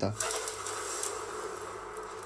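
A storm sound effect: a steady hiss of wind and rain, played back from a music video's soundtrack.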